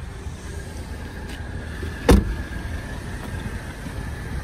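A car's rear passenger door shut once, a single solid thud about two seconds in, over a steady low background noise.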